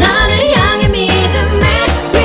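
Female vocalist singing a K-pop pop song with layered harmonies over its studio instrumental backing track, with a steady kick drum and bass line.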